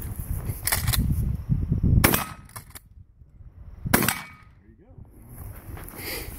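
Three shotgun blasts from a Winchester 1897 pump-action shotgun, spaced a second or two apart.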